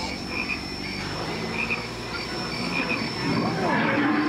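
Frog-like croaking calls: a short double croak repeating about once a second, over a steady background hum.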